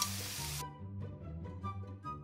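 Background music with steady low notes, and oil sizzling in a stainless frying pan as chicken wings go in with garlic and jalapeños; the sizzle cuts out suddenly about half a second in, leaving only the music.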